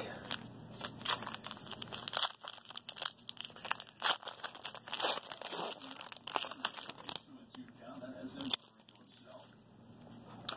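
Trading-card pack wrapping being torn open and crinkled by hand: a dense run of sharp crackles and tears that thins out about seven seconds in.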